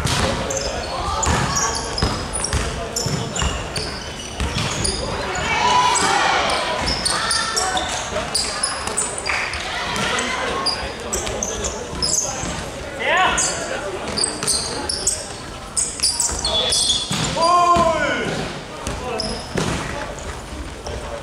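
Basketball bounced and dribbled on a hardwood gym floor during a game, with short sneaker squeaks and shouted calls ringing in a large hall. Two louder shouts come about two-thirds of the way in and near the end.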